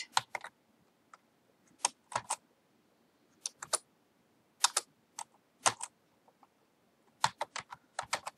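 Typing on a computer keyboard: keystrokes in short, irregular clusters with pauses between them, then a quicker run of about half a dozen keys near the end.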